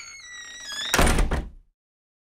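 Title-card sound effect: a short whooshing swell with a sweeping tone, ending about a second in with one loud, heavy thud that dies away within half a second.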